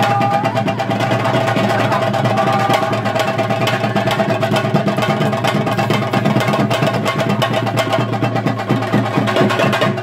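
Theyyam ritual drumming: fast, continuous beating on chenda drums, with the voices of a crowd of boys shouting along.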